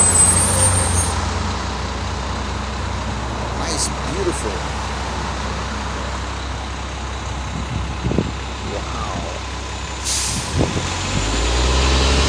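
Articulated city bus pulling away from a stop, its engine humming low and strong at first and then fading into steady street traffic noise, with a brief hiss about ten seconds in.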